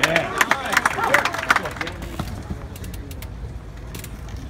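Tennis stadium crowd reacting after a point: scattered clapping and spectators' voices for about two seconds, then dying down to a low murmur with a few light taps.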